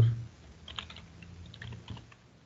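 Typing on a computer keyboard: two short runs of keystrokes, the first about half a second in and the second near the end.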